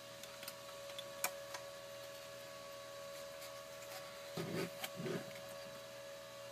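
Faint clicks and handling noises of a circuit board and a capacitor being fitted by hand, over a steady hum, with two short low sounds near the end.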